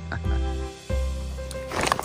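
Background music with sustained chords over a steady bass line, changing chord about a second in. A man's voice is heard briefly near the start.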